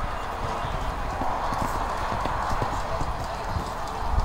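Hoofbeats of a horse cantering on a sand arena, a repeated dull beat that is most distinct from about a second in.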